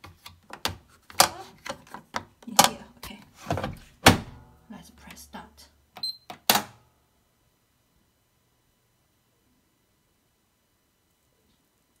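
Plastic detergent drawer of a Miele W1 front-loading washing machine pushed shut, with a run of knocks and clatters, the loudest about one, two and a half and four seconds in. About six seconds in, the control panel gives a short high electronic beep as the Start/Stop button is pressed, then a click, and the rest is near silence.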